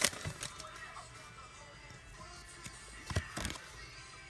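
Faint background music, with a brief crinkle of a foil booster-pack wrapper right at the start. Two sharp clicks of playing cards being handled come about three seconds in.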